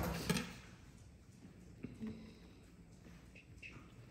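A couple of short knocks or clatters right at the start, then quiet kitchen room tone with a few faint small handling sounds.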